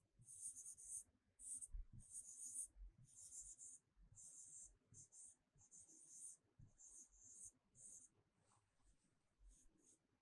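Faint scratching of a stylus writing on an interactive whiteboard screen: a quick run of short, separate strokes that thins out near the end.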